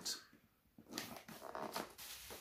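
Faint rustling and handling sounds of a cardboard box and plastic packaging being moved and set aside, starting about a second in after a brief quiet moment.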